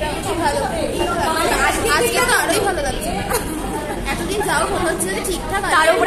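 Chatter of several women's voices talking over one another.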